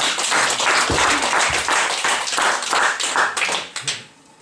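Audience applauding, the clapping thinning out and stopping just before the end.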